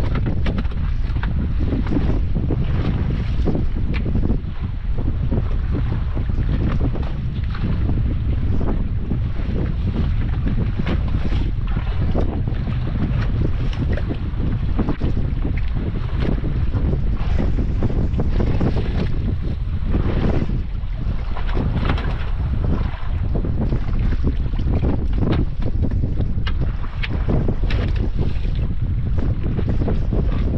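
Steady, loud wind buffeting the microphone on a small open boat at sea, with waves lapping against the hull.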